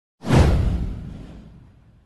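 Whoosh sound effect from an animated video intro: it comes in suddenly about a quarter of a second in, with a deep rumble under it, and fades away over about a second and a half.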